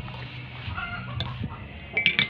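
A chicken clucking in short calls, with two sharp clicks a little after a second in.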